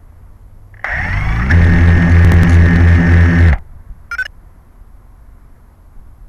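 FPV quadcopter's brushless motors spinning up with a rising whine about a second in, running steadily and loudly at idle for about two and a half seconds, then cutting off suddenly as they are disarmed. A brief high chirp follows shortly after.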